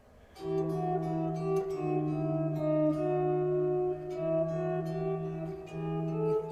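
Epiphone electric guitar playing a sequential melody of plucked notes in E minor, starting about half a second in. A low bass note rings under the moving upper notes.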